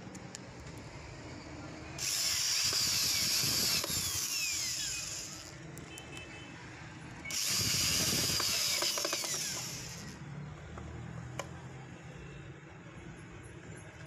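Cordless drill driving screws into the rim of a homemade wooden blower-fan housing, in two runs of about three seconds each, the motor's whine sliding down in pitch during each run.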